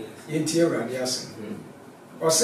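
A man speaking briefly, then a short pause.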